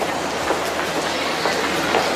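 A train running by: a steady rumble with a low hum underneath and a few faint clicks.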